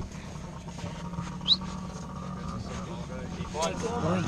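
Dirt bike engines idling in the background, a steady low hum, with one short high rising squeak about a second and a half in.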